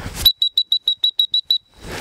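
Dog-training whistle blown in a quick series of about nine short, high blasts, ending on a slightly longer note. It is the come-in signal calling the retriever back.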